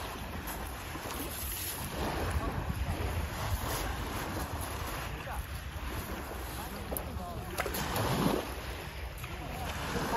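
Wind rumbling on the microphone over the steady wash of surf on the shore.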